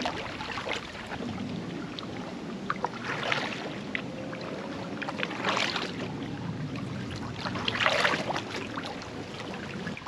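Packraft being paddled along a calm river: the paddle blades swish through the water, with three louder strokes a couple of seconds apart over a steady wash of water and air noise.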